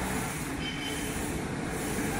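Direct-to-film inkjet printer running, its print-head carriage sweeping back and forth over the film about once a second with a steady mechanical noise.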